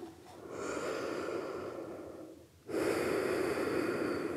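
A woman breathing deeply and audibly while lying face down at rest after cobra pose: two long breaths, the second louder and starting abruptly a little under three seconds in.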